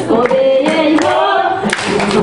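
A group of voices singing a Djiboutian folk dance song in unison, holding long notes, with sharp hand claps keeping time.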